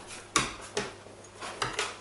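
A few sharp clicks and knocks, the loudest about a third of a second in and several softer ones later, over quiet room tone.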